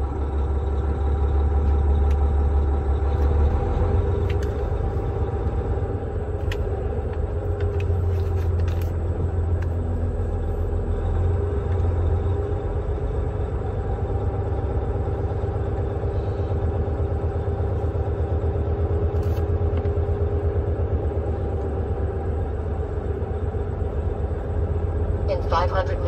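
Semi truck's diesel engine running steadily at low speed, heard inside the cab as the truck creeps forward, a deep continuous rumble.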